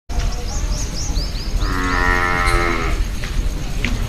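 A cow mooing once, a long low call lasting about a second and a half and starting about a second and a half in, over a run of short high chirps from small birds.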